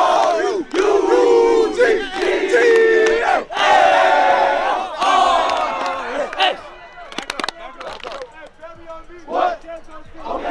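A team of football players shouting a chant together, loud long-held unison calls broken by short pauses. About six and a half seconds in the chant stops, leaving quieter scattered voices and a few sharp clicks.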